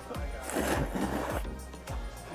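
Hot soba noodles and broth slurped from a bowl: one long airy slurp of about a second and a half, over background music.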